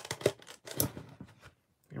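Packing paper crinkling and rustling in a few short, sharp handfuls as a folding knife is dug out of its packed case.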